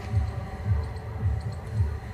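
A low throbbing hum with soft pulses about three times a second.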